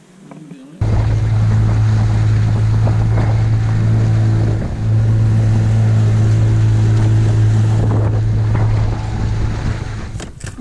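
Outboard motor of a small boat running steadily at speed, with wind and water noise over it. It starts suddenly about a second in and dips briefly near the middle.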